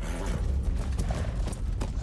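Horses' hooves clopping, a run of quick irregular knocks over a low rumble, from a TV drama's battle-scene soundtrack.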